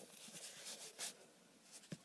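Fingers pressing and squishing a lump of butter slime against a wooden tabletop: faint, soft strokes, the strongest about a second in, and a short sharp tap near the end.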